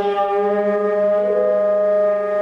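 Two saxophones, alto or baritone with tenor, sounding long held notes together in free jazz improvisation, steady and loud; a further tone joins a little over a second in.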